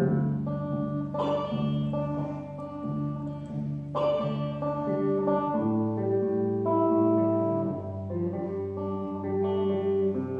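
Solo electric guitar played slowly, with ringing held notes and chords and two stronger picked attacks, about a second in and again at four seconds.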